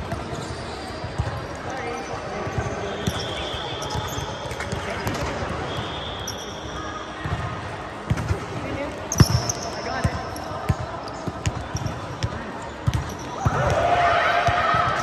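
Volleyballs being struck by hands and forearms in a large echoing gym: irregular sharp slaps, the loudest about nine seconds in and more frequent in the second half, under players' voices.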